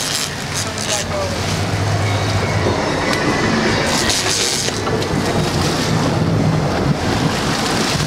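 Boat engine running with a steady low hum, under wind buffeting the microphone and the rush of water past the hull.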